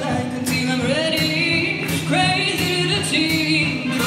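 Live big band playing, with saxophones, brass and drums, and a vocalist singing a melody over it.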